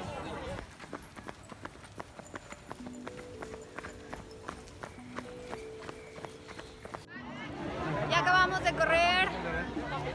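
Running footfalls on a road, an even beat of short knocks picked up by a phone carried by a runner, with a few steady held tones over them in the middle. After a sudden cut about seven seconds in, voices take over.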